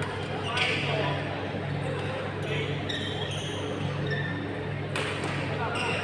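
Badminton rally in a large hall: rackets strike the shuttlecock with several sharp smacks spread across the few seconds. A steady low hum and background voices run underneath.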